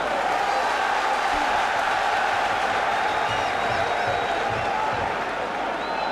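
Football stadium crowd noise: a steady din of many voices from the stands.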